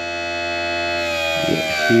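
Electric RC tire truer running, spinning a foam tire while a file is pressed against it to pre-feather the tread. It makes a steady motor whine with a slight rise in pitch early on.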